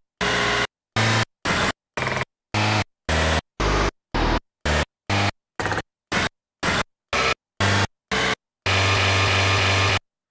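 Car-engine recordings, pitched and mapped across the keys as a sample set, played back one key at a time from an on-screen software keyboard: about sixteen short, noisy notes at roughly two a second, each at a different pitch, then one longer held note near the end.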